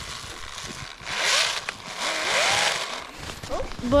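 An RC snowmobile's Spektrum brushless electric motor whines up in pitch in two short bursts of throttle, about one and two seconds in. Each burst comes with a rushing hiss as the track churns snow.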